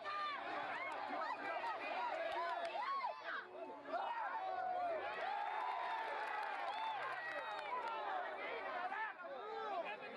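Rugby crowd shouting and calling out, many voices overlapping.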